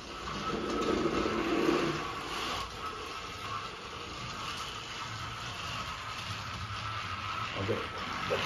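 Battery-powered motorized Thomas & Friends toy engine running along plastic track while pulling a trailer, its small motor whirring at a steady pitch.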